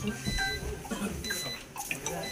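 A few short, high-pitched beeps spaced apart over quiet room noise and a faint murmur of voices.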